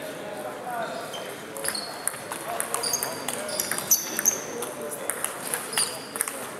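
Table tennis rally: the ball clicking off the paddles and the table in quick succession, starting about two seconds in.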